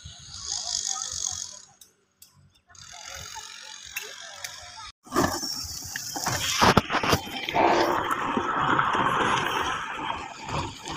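Backhoe loader at work on rocky soil fill: after two brief dropouts, a louder rushing rattle with several sharp knocks comes in about halfway, typical of stones and soil tumbling from the bucket.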